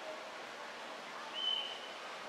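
Quiet outdoor ambience, a faint steady hiss, with one short, thin, high whistle-like tone about a second and a half in.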